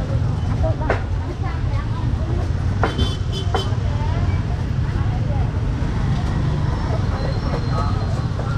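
Busy open-air market ambience: background chatter of voices over a steady low rumble of motorbike and traffic engines, with a few sharp clicks about a second in and around three seconds in.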